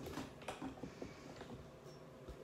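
A few faint clicks and rustles of a person shifting closer on a seat, fading out within the first second and a half.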